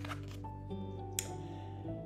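Soft background music of long, held notes, with one short sharp click about a second in as an oracle card is lifted from the spread.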